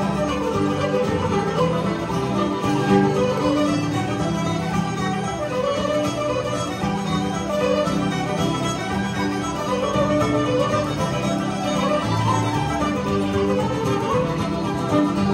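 Irish traditional music played live by a large ensemble, with fiddles, flutes, guitar and bodhrán, at a steady level.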